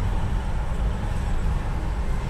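Steady low outdoor rumble with no distinct events, heard as background traffic noise.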